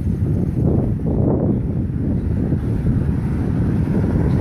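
Wind buffeting a phone's microphone outdoors, a loud, ragged rumble with no clear pitch.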